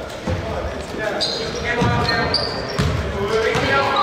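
A basketball being dribbled on a hardwood gym floor: several low thuds a second or so apart, echoing in the hall, with short high squeaks and players' voices around them.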